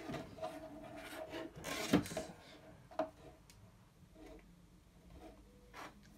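Handling noise as a plastic ruler and a sleeved PSU cable are moved and rubbed against a wooden desk top, with a louder scrape about two seconds in and a single click about a second later.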